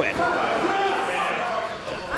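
Indistinct chatter and calls from a small group of people gathered around a wrestling ring.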